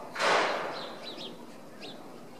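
A short rush of noise about a quarter-second in that fades away over about a second, followed by a few brief high bird chirps.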